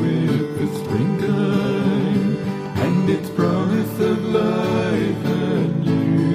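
A song with a singing voice over acoustic guitar.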